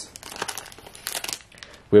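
Plastic card-pack wrapper crinkling as it is handled, a run of irregular crackles.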